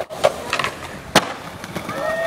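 Skateboard rolling on smooth concrete, its wheels giving a steady rolling noise with a few light clicks. About a second in comes one sharp, loud clack of the board striking the ground.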